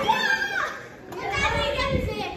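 Excited children's voices, shouting and cheering.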